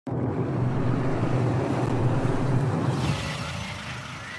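Fire-blast sound effect: a steady, noisy rush of flame that starts abruptly and fades away over the last second.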